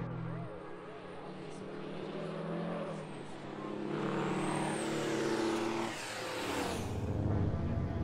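Diesel engines of modified racing semi trucks running on the track. One passes by around the middle, with its pitch falling from about four to seven seconds.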